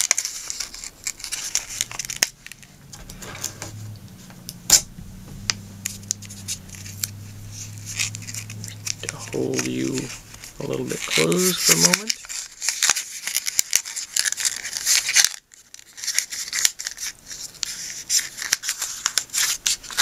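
A sheet of printer paper crinkling and rustling as it is rolled and pinched by hand into a cone for a blowgun dart, with sharp crackles, densest in the second half. A low voice, without words, sounds through the first half.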